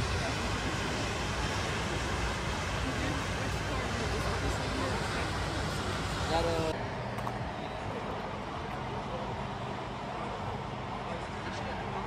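Outdoor parking-lot background noise: a steady low hum of a car engine running, under faint background chatter, with a brief voice about six seconds in. The hiss drops away abruptly about seven seconds in.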